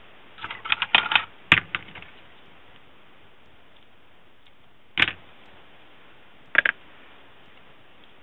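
Small clicks and taps of hands handling paper pieces and foam tape: a quick cluster of light taps in the first two seconds, then two single sharp clicks, one in the middle and one a second and a half later.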